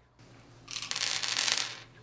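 White tablets spilling onto a tabletop: a quick run of small hard clicks that starts about half a second in and lasts about a second.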